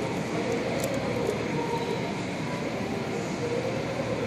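Steady background din, an even rushing noise with no distinct events, heard while a screen protector is being lined up by hand on a shop counter.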